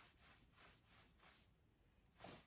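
Near silence: the faux leather trousers make hardly any noise.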